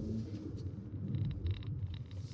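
Low, steady road and tyre rumble inside a Lexus RX SUV's cabin as it swerves left and right at about 50 km/h, with a few faint light ticks around the middle.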